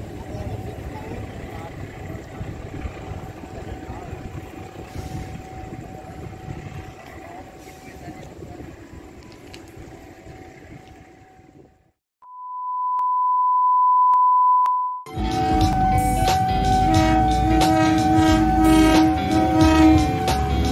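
Low rumble of an electric commuter train running on the tracks, slowly fading as it moves away. It cuts off at about 12 s, and a steady electronic beep of about three seconds follows. Background music starts at about 15 s.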